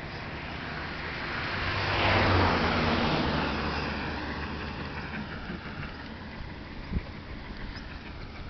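A motor vehicle driving past on the road, its engine and tyre noise swelling to a peak about two seconds in and then fading away with a falling pitch. A short sharp knock near the end.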